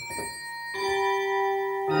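Yamaha DX7 Mark II FM synthesizer playing its tubular bells preset: sustained, ringing bell-like notes. A new note sounds about three-quarters of a second in, and a louder, fuller chord comes in near the end.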